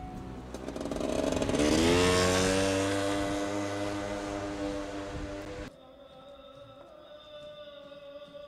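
An engine revving up, rising in pitch over about two seconds, then holding steady and slowly fading before it cuts off suddenly near six seconds in.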